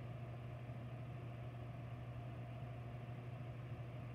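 Steady low droning hum of room equipment or ventilation, with a faint even background hiss.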